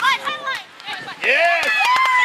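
High-pitched shouts and calls, loud, during a beach volleyball rally: a few short calls in the first second, then one long drawn-out shout through the second half.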